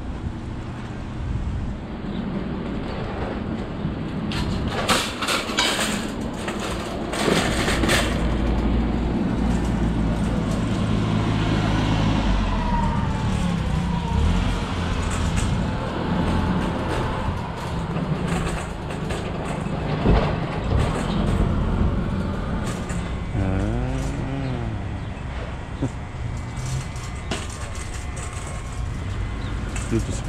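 Motor vehicle engines running in a busy parking lot, a low steady hum with engine pitch rising and falling a few times, and a cluster of clattering knocks about five to eight seconds in.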